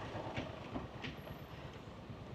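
Quiet, low steady rumble of a flatbed truck's engine running while stopped, with two faint light clicks in the first second.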